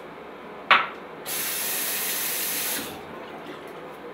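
A sharp knock just under a second in, then a tap running in a steady rush of water for about a second and a half before cutting off suddenly, as in rinsing a razor while shaving.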